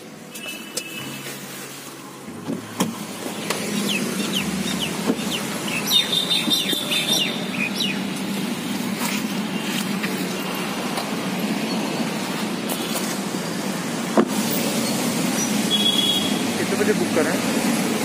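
Steady street traffic noise that gets louder a few seconds in, with a few short high chirps and a couple of sharp knocks.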